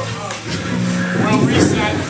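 Voices talking between songs at a loud small-club gig, over a low steady hum that comes in about half a second in.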